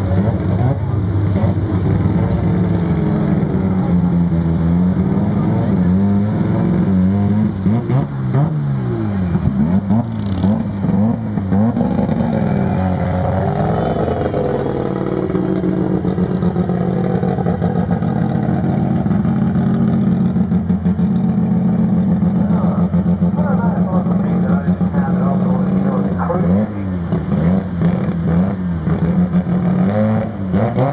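A turbocharged drag car's engine revving up and down repeatedly, settling into a steady idle for several seconds midway, then being blipped again near the end.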